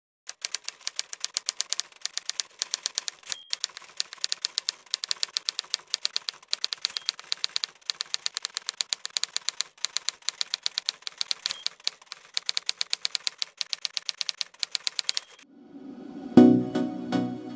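Typewriter keys striking in rapid runs of about ten strokes a second, with a few short pauses, as a line of text is typed out; the typing stops shortly before the end.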